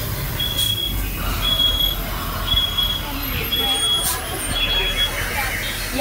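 Electronic beeper sounding a short, high-pitched beep about once a second, over the low rumble of a moving vehicle.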